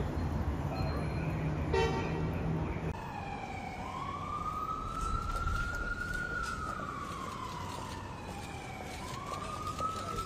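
A wailing emergency-vehicle siren starts about three and a half seconds in. Its pitch rises, holds, falls slowly over several seconds, then begins to rise again near the end. Before it there is a steady low hum with one short beep about two seconds in.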